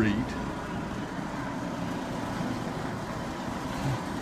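Freedom carpet-cleaning machine running steadily, a constant machine drone with a faint high whine.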